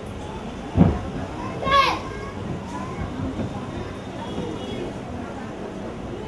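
A single loud thud a little under a second in, then a short high-pitched shout near two seconds, over a steady murmur of children's voices in a hall. The thud and shout come from two children sparring in a karate demonstration.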